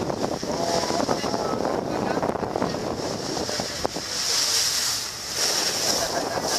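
Wind buffeting the microphone and water rushing past a moving passenger boat, with a higher, brighter rush from about four seconds in.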